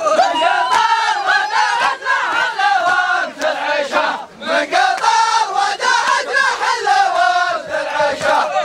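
A crowd of men chanting loudly in unison, the traditional group chant for a dagger dance, with sharp beats in a steady rhythm under the voices. The chant drops briefly about four seconds in.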